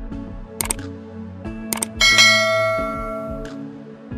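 Background music with two pairs of short clicks, then a bell-like chime about two seconds in that rings out and fades over about a second and a half.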